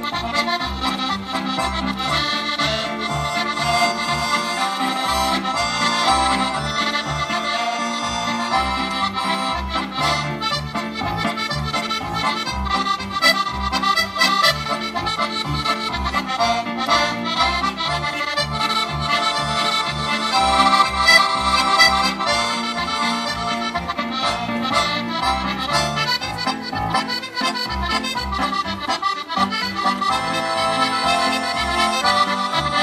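Scottish traditional music with a steady, even beat in the bass, played as background music.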